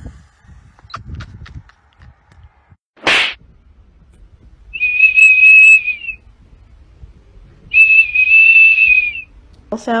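A small plastic whistle held in a golden retriever's mouth sounds twice, two long, steady, high-pitched blasts of about a second and a half each. Before them, about three seconds in, there is a short sharp noise.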